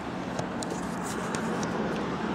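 Road traffic noise, a steady rush that grows slightly louder, with a few light clicks from the handheld camera being turned.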